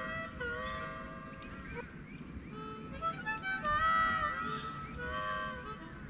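Background music led by a harmonica, playing held notes that bend slightly in pitch, several sounding together.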